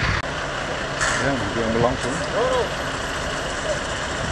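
Fire engine idling steadily, a low even hum, with a few short voices over it.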